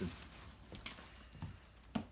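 Quiet room with faint rustling and a few light clicks, and one short sharp click just before the end.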